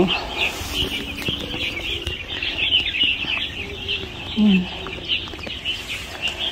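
A dense chorus of birds chirping in the trees: many short, high chirps overlapping without a break. A brief low voice-like sound comes about four and a half seconds in.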